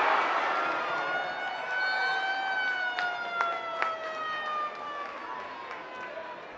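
Stadium crowd noise swells at the start during an attack on goal and dies away. A long siren-like tone follows, rising slightly and then sliding slowly down in pitch for several seconds, with a few sharp clicks in the middle.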